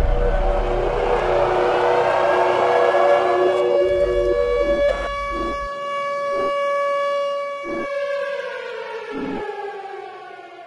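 Air-raid siren sounding a steady tone over a deep rumble, with a few dull hits after the rumble drops out about halfway. Near the end the siren's pitch falls as it winds down.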